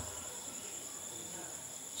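Faint, steady high-pitched trilling of insects, such as crickets, heard in a pause in the talk.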